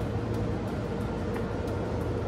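Steady low hum and hiss of a convenience store's refrigerated display cases and ventilation.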